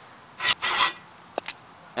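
A paint scraper scraping caked dirt from the underside of a lawn edger's housing: two short rasping strokes about half a second in, followed by a brief squeak and a click.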